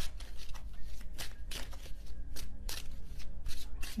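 A deck of tarot cards being shuffled by hand: a quick, uneven run of soft card strikes, about three or four a second.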